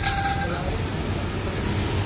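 Steady low rumble of road traffic, vehicle engines running on the street, with a faint short tone near the start.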